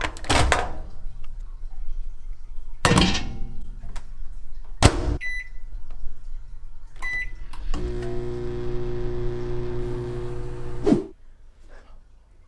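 Whirlpool microwave oven: three clunks, then two short keypad beeps, then the oven running with a steady hum for about three seconds before it stops abruptly.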